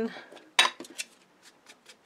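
Sharp click about half a second in, then a second click and a few lighter taps: a black ink pad and craft tools being picked up and handled on a cutting mat.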